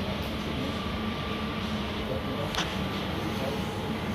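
Steady low hum of machinery in a factory hall, with a faint thin whine coming in about a second in and a single short click about two and a half seconds in.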